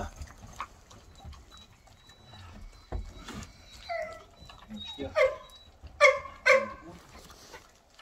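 Dogs vocalising at feeding time: a faint, thin, high whine through the first half, then three short, loud yelping barks about five to six and a half seconds in.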